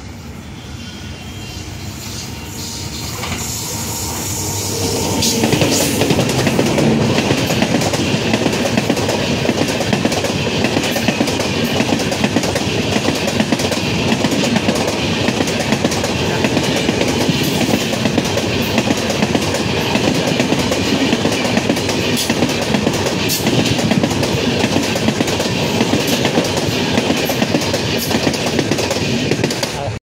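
The August Kranti Tejas Express, hauled by an electric locomotive, approaches at speed: its noise grows over about the first five seconds. Then the coaches run past close by with a loud, steady rolling rumble of steel wheels on rails and rapid clickety-clack over the rail joints.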